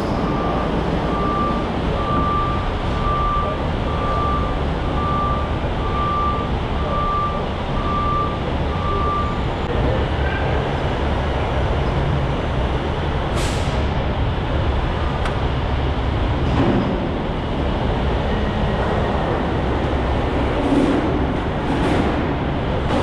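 Steady heavy engine drone with a low rumble, typical of an idling truck working at a cargo dock. Over it, a vehicle's reverse-warning beeper sounds about once a second for roughly the first nine seconds, then stops. A few faint clicks come later.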